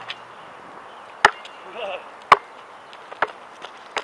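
A basketball bouncing on an outdoor court: two loud, sharp bounces about a second apart, then a few lighter knocks near the end.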